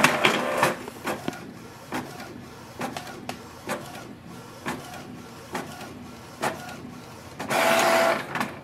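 Canon PIXMA G-series ink-tank inkjet printer printing a nozzle check pattern: the printhead mechanism runs with uneven knocks about once a second. A louder, longer burst of motor noise comes near the end as the printed sheet is fed out.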